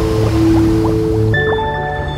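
Closing music of sustained chords that shift to a new chord about a second and a half in, with short rising bubbling sound effects over it.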